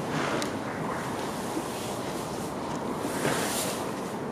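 Steady rushing background noise of a large indoor sports hall, with a couple of faint knocks.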